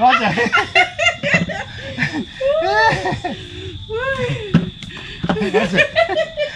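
Voices talking and laughing.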